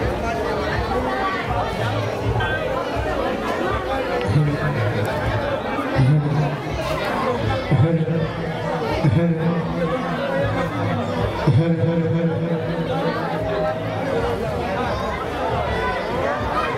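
Overlapping chatter of several men talking at once in a crowd, with music playing in the background and held low notes running through the middle stretch.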